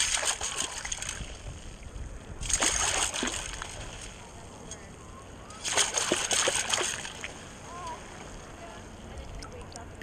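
Water splashing and sloshing through a perforated stainless-steel sand scoop as it is shaken under the surface to wash mud out. There are three bouts of splashing a few seconds apart.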